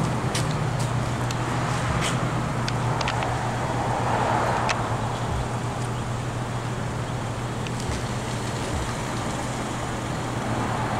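Steady low mechanical hum under a continuous wash of urban street noise, with a few faint short ticks scattered through it.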